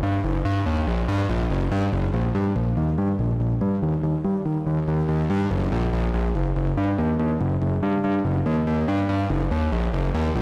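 Modular synthesizer voice from an AE Modular GRAINS module running the Scheveningen west-coast oscillator firmware, playing a fast line of stepping notes. Its tone brightens and dulls as two LFOs sweep the wave folder and distortion.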